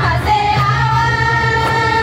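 A group of girls singing a Sadri welcome song in unison, holding one long note.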